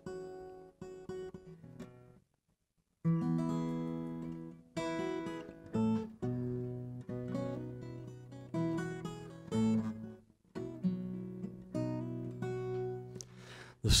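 Solo acoustic guitar: a few soft notes, a short pause, then a song's introduction played as a string of strummed chords, each left to ring. A voice begins singing at the very end.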